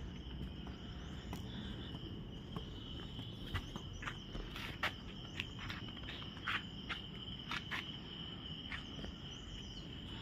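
Insects singing in a steady high drone, with scattered short ticks over a low outdoor background hiss.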